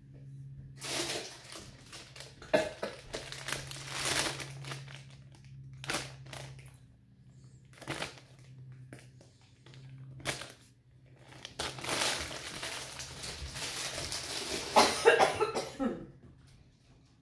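Plastic produce bag rustling and crinkling in two long spells, with separate clicks and knocks in between as kitchen things are handled and put away.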